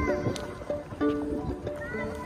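A street musician's live instrumental melody of held notes that change pitch every half second or so.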